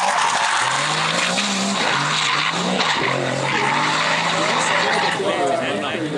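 Drift car sliding sideways through a corner, its tyres screeching continuously as the rear wheels spin, with the engine held at high revs that rise and then hold steady.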